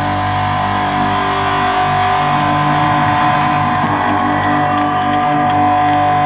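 Amplified electric guitars and bass ringing out on a held final chord with a steady high feedback tone, the drums stopped: the end of a live punk rock song.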